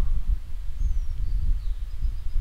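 Low, steady background rumble, with a faint brief high tone about a second in.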